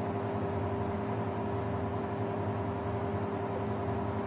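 Steady mechanical hum with constant tones in it, unchanging throughout.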